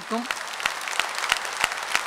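Audience applauding: a dense patter of many hands clapping, with a woman's voice trailing off just at the start.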